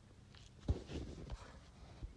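Footsteps on dry grass and sandy dirt: a few soft steps, with dull thumps about two-thirds of a second in and again a little past a second.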